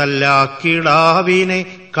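A solo voice singing Malayalam verse in a slow, chant-like melody, with long held notes that slide between pitches.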